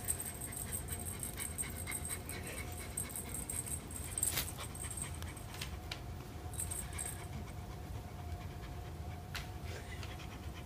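A cat panting rapidly with its mouth open and tongue out.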